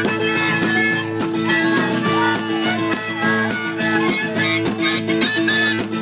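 Live country music instrumental break: a harmonica playing held notes over a strummed acoustic guitar.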